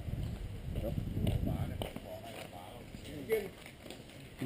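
Faint talking with a low rumbling noise underneath, strongest in the first two seconds.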